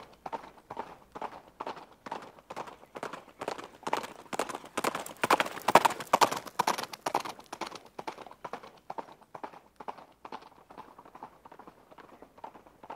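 A horse's hooves clip-clopping at a steady slow trot on hard pavement. The hoofbeats grow louder to a peak about six seconds in, then fade away as if passing by.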